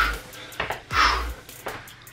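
Two sharp, breathy exhalations about a second apart: the effort breaths of a man doing jumping split squats, one per jump.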